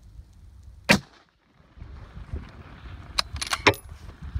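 A single rifle shot from a .260 Ackley Improved rifle, one sharp loud crack about a second in. A few sharp clicks follow near the end.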